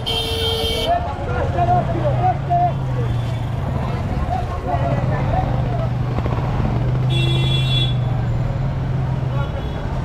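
Motorcycle engine running at low speed in slow street traffic, a steady low hum. A vehicle horn honks briefly right at the start and again about seven seconds in.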